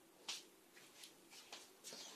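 Near silence with a few faint, brief handling noises, the loudest about a quarter second in, as a pot is taken up in pot holders to drain its grease.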